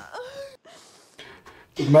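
A faint, short gasp with a brief catch of voice that rises and falls, lasting about half a second just after the start. Then it is quiet apart from a few faint clicks, and a man starts speaking near the end.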